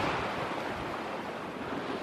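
Small sea waves washing against a concrete tetrapod seawall and shore, a steady noisy wash that eases slightly.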